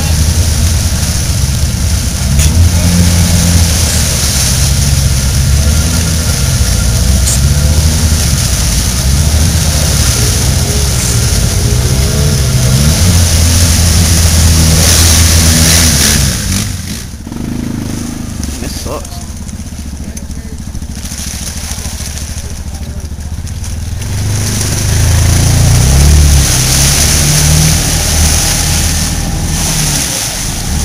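Off-road vehicle engines revving hard in deep mud, the pitch climbing and falling over and over. The engine noise drops away about sixteen seconds in and builds again near the end.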